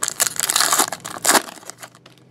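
Foil wrapping from a trading-card pack crinkling and crumpling in the hands, a dense crackle for about a second and a half that then dies away.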